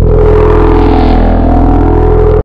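Loud electronic TV ident sting: a steady droning synthesised chord with a heavy low end, held without a break.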